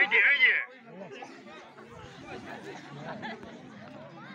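Crowd of spectators chattering, with one loud high-pitched voice in the first half second before the babble settles lower.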